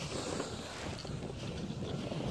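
Wind buffeting the phone's microphone: an uneven, gusty rumble.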